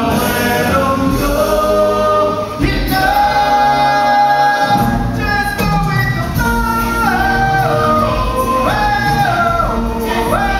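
Live stage-musical song: singing voices with band accompaniment, played over the theatre's sound system. In the second half the voices hold long notes that step up and back down in pitch.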